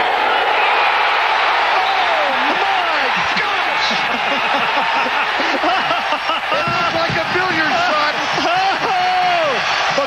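Stadium crowd cheering loudly: a dense roar of many voices, with shouts and whoops rising and falling over it, as a home crowd celebrates a game-winning field goal.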